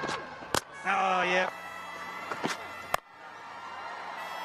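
Cricket broadcast audio: a short vocal exclamation about a second in over faint stadium background, with a sharp click just before it and another about three seconds in.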